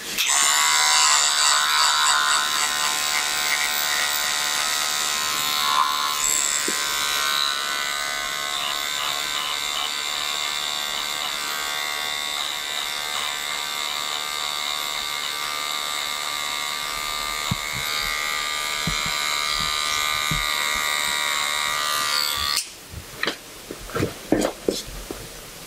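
Small handheld electric trimmer buzzing steadily as it is worked over a beard and moustache. It switches on just after the start and cuts off suddenly about a second and a half before the end.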